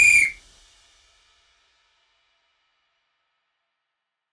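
A short, high-pitched whistle-like signal tone marking the 60-second countdown timer running out at zero. It cuts off about a third of a second in and fades away over the next second.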